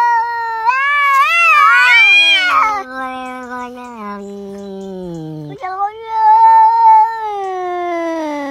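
Cat yowling in long drawn-out calls. The first wavers and climbs in pitch, the next is lower and sinks slowly, and a third long call falls away near the end.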